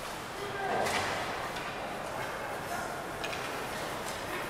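Ice rink sound during live play: skates and sticks on the ice, with a few faint clicks and distant voices in the background.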